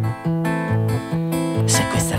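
Acoustic guitar strummed in a steady rhythm, its chords and low notes changing about every half second.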